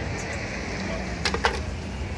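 Wet city street at night: a steady low rumble of traffic, with a couple of sharp clicks about a second and a half in.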